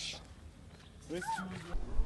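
A child's short vocal sound about a second in, after a moment of near quiet, followed near the end by a low rumble.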